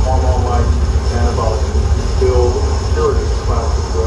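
Live harsh-noise electronics from patched effects pedals and modular gear: a loud, dense, steady low rumble. Over it run short, warbling, garbled voice-like fragments that bend up and down in pitch, in the manner of a processed spoken-word sample.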